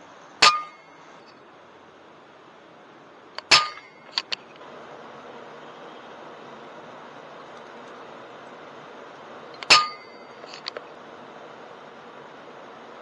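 Three shots from an FX Impact M3 .22 PCP air rifle, about half a second, three and a half seconds and nearly ten seconds in. Each is a sharp crack with a short metallic ring, and a couple of quieter clicks follow the second and third, over a steady hiss.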